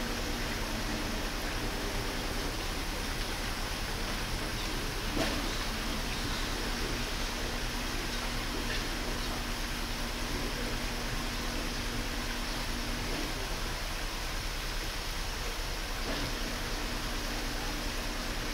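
Steady hiss of background noise with a faint low hum, and a single faint knock about five seconds in.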